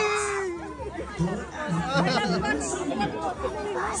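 Studio audience chattering, with many voices calling out and talking over one another. A shout of "Yeah!" comes at the very end.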